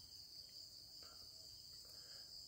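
Near silence: quiet room tone under a faint, steady high-pitched background drone.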